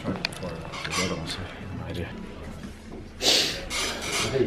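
Low, indistinct voices with a few small clicks, and a short hissing burst a little over three seconds in.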